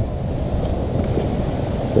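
Steady low rumbling outdoor background noise, with no distinct events.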